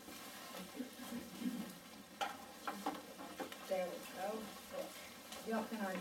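Paper pages of a Bible being leafed through, a soft rustle with a few light ticks about two to three and a half seconds in. A faint voice murmurs in the second half.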